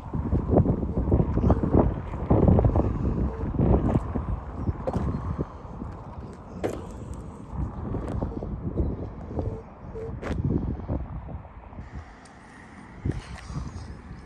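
Gusty wind rumbling on a handheld phone's microphone, with scattered clicks and knocks; the wind eases near the end.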